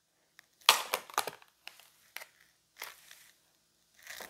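Tarot cards being shuffled and a card drawn: a handful of short, papery rustles and snaps of card stock, unevenly spaced.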